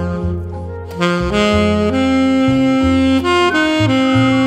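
Alto saxophone playing a slow Shōwa mood-kayō ballad melody in long held notes over a recorded backing accompaniment with a low bass line; one phrase fades a little before a second in and the next begins just after.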